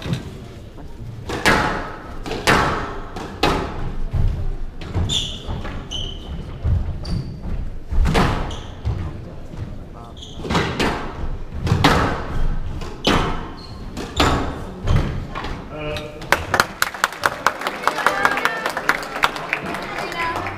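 Squash rally: the ball cracking off rackets and walls roughly once a second, echoing in a large hall, with short squeaks of court shoes on the wooden floor. Near the end the rally stops and the crowd claps.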